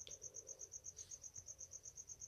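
Faint, high-pitched insect chirping, pulsing evenly at about nine chirps a second.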